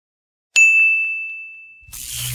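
A single high bell 'ding' sound effect accompanying a notification-bell animation. It is struck about half a second in and rings down steadily for over a second, and a rushing whoosh cuts in near the end.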